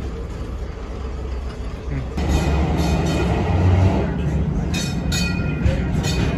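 Vintage electric trolley running on rails: a low rumble comes in about two seconds in, joined by a steady high whine and a few sharp clacks near the end.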